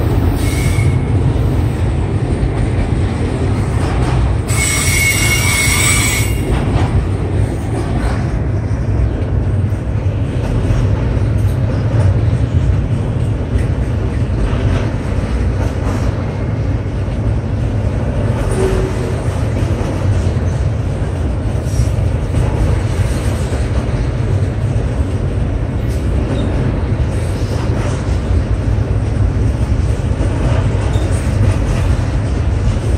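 Loaded autorack freight cars rolling past: a steady, low rumble of steel wheels on rail. About four and a half seconds in, a brief high screech of wheel squeal lasts a second or so.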